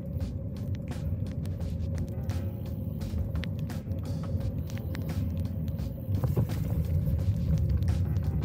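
Wind rumbling on the handlebar camera's microphone and bicycle tyres running on wet pavement, with many sharp ticks of raindrops striking the camera throughout.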